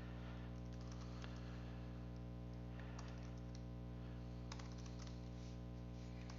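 Faint, irregular clicks of typing on a keyboard, over a steady low electrical hum.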